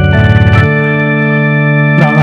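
Electronic keyboard with an organ sound holding a sustained chord, the lowest note dropping out under a second in. It is the D that was asked for, played to give the singer his starting pitch.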